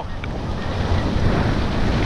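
Wind buffeting the microphone as a mountain bike rolls fast down a loose gravel road, a steady rushing noise with the tyres crunching over the stones and a few faint clicks from the gravel.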